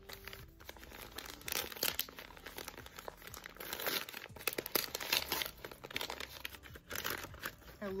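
Gift wrapping paper crinkling and crumpling as a wrapped present is handled and unwrapped by hand, in a run of irregular rustles and crackles.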